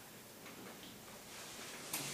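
Quiet room tone with a faint hiss, and one short click near the end.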